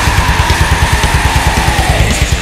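Blackened melodic death metal instrumental passage: distorted guitars over a fast, even pulsing low end, with one long held high note that falls away near the end.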